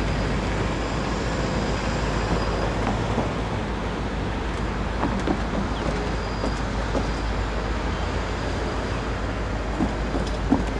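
Steady low rumble of outdoor background noise, with a few faint ticks about halfway through.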